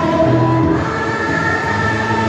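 A song playing: sung vocals over instrumental accompaniment, with long held notes.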